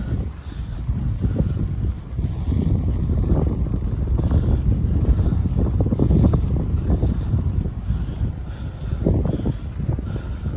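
Wind buffeting the microphone of a camera carried on a moving bicycle: a heavy low rumble that swells and drops in gusts.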